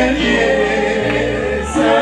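Live Ghanaian gospel music: several voices singing together over sustained bass notes, which shift to a new note about halfway through.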